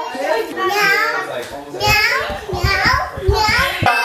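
Young children's voices, calling and babbling at high pitch. A run of low thumps comes in the second half.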